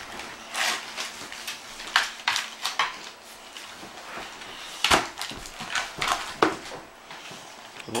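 Dogs tearing wrapping paper off a present and crinkling the plastic packaging of a chew treat: irregular rips and rustles, the loudest about five seconds in.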